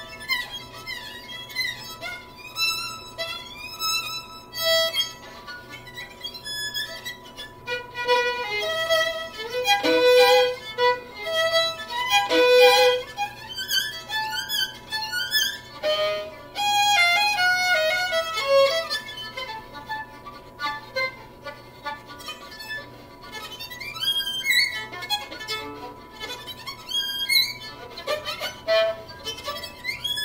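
Solo violin played with the bow: a melody of held notes with vibrato, louder through the middle passages.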